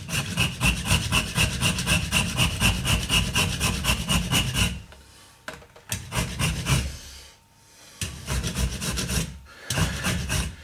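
Hand rasp scraping across a wooden pipe blank held in a vise, shaping the pipe. Quick back-and-forth strokes, about five a second, for nearly five seconds, a short pause, then two shorter runs of strokes.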